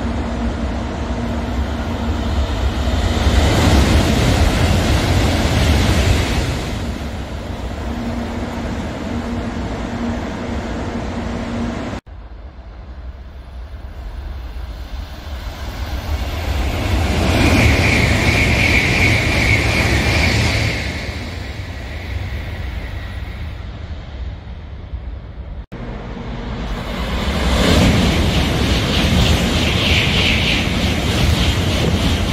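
Shinkansen bullet trains passing through stations at speed, three pass-bys one after another. Each is a loud rush of air and wheel noise that builds and then fades. The second carries a high steady whine at its loudest.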